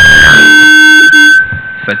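Public-address microphone feedback: a loud, steady, high-pitched howl held on one pitch, which falls away about one and a half seconds in.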